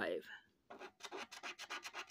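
A coin scratching the coating off a scratch-off lottery ticket in quick back-and-forth strokes, about eight a second, starting under a second in after the tail of a spoken word.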